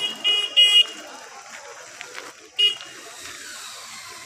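A vehicle horn beeping: three short toots in the first second and one more a little before the three-second mark, over background chatter of people outdoors.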